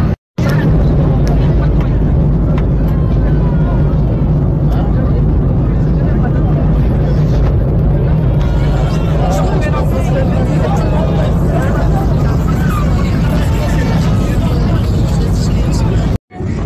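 Airliner cabin noise in severe turbulence: a loud, steady low rumble of engines and airflow, with passengers' voices throughout.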